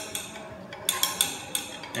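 Glass stirring rod clinking against the inside of a glass beaker as borax is stirred into water to dissolve it: several light, sharp clinks at uneven intervals.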